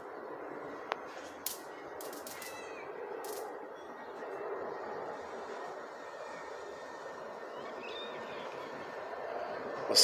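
Outdoor background ambience: a steady low hum of noise, with a few sharp clicks in the first couple of seconds and a couple of faint short chirps.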